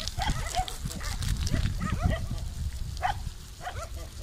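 Dogs barking repeatedly, many short barks following one another closely, over a steady low rumble.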